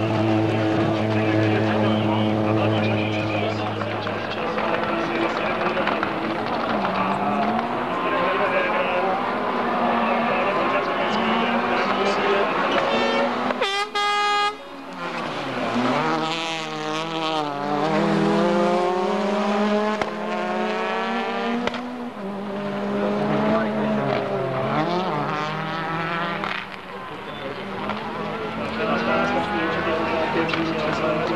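Rally car engines revving hard through tight circuit corners, the pitch climbing and falling with each gear change and lift. The sound breaks off abruptly about halfway through, and then a Škoda Octavia WRC's turbocharged four-cylinder revs up in its place.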